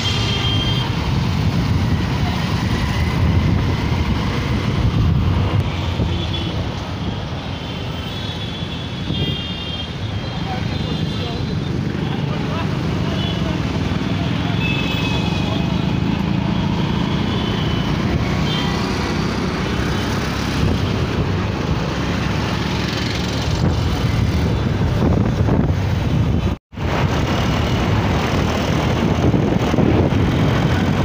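Road traffic heard from a moving motorcycle: the steady low noise of engines and tyres, with short vehicle horn toots now and then in the first half. The sound cuts out briefly near the end, then the riding noise resumes.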